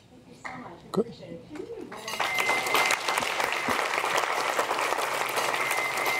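Audience applause breaking out about two seconds in and holding steady, after a few faint spoken words and a single knock.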